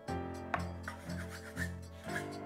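Flat of a cleaver blade pressing and scraping dough across a floured wooden board, with a sharp tap of the blade about half a second in, over instrumental background music.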